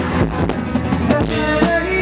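A live rock band playing loudly with the drum kit to the fore: a quick run of drum hits through the first second or so, then the band plays on with held notes.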